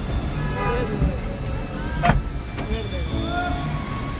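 Voices of people talking at a car window over a steady low rumble of traffic, with one sharp click about two seconds in.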